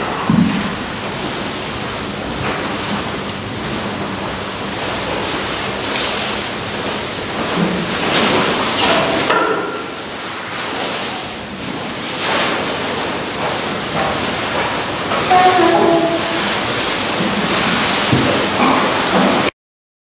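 Steady hiss of room noise in a church, with faint footsteps and shuffling as people move about, and a few brief murmured voices. The sound cuts off abruptly near the end.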